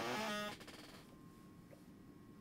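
A man's voice trailing off on a last word, then near silence: room tone with a faint, thin steady tone.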